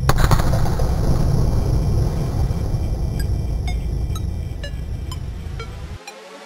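A single sharp thud of a football being kicked at the very start, ringing briefly in the hall, then a steady low rumble of hall noise that slowly fades. In the second half faint short ticks come about twice a second.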